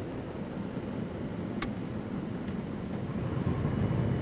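Airflow rushing past the cabin of a de Havilland Beaver gliding with its engine stopped, with one short click about one and a half seconds in. Near the end, its Pratt & Whitney R-985 radial engine restarts in flight, and a low drone builds and grows louder.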